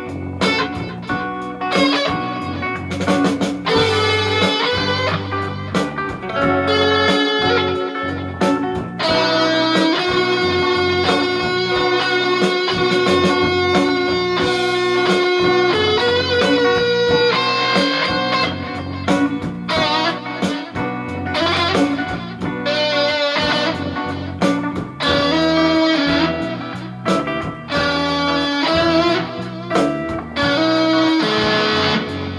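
Stratocaster-style electric guitar playing a slow blues instrumental: single-note lines with a long held note about ten seconds in and bent notes with vibrato later on.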